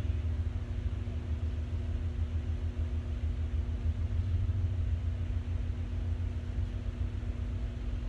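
Steady low rumble of room background noise with a faint constant hum, with no other events.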